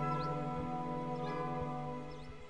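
Background music: quiet, sustained held chords.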